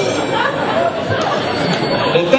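Indistinct, overlapping voices: several people talking at once in a large hall, with no one voice standing out.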